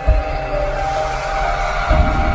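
Intro music made of sustained synthesizer notes, with a low bass hit just after the start and another at the end, and a whoosh that swells in the second half.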